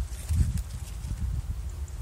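Footsteps of skate shoes on a wooden edging beam beside dry leaves: a few soft, hollow thuds, the loudest about half a second in, with faint rustling.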